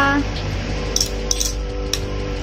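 Metal chopsticks and a metal spoon clinking against a bowl of noodles: a few light, sharp clicks about a second in and again near the end, over steady background music.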